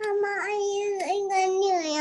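A child's voice holding one long, nearly level sung or hummed note, with slight dips in pitch, heard over a video call.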